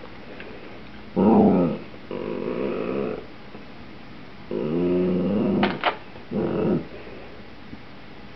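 Dachshund growling in four bouts of a second or so each, a demanding growl to be given a chip.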